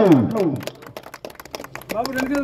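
A man's voice falling in pitch, then scattered hand claps from a small group of people for about the last second and a half.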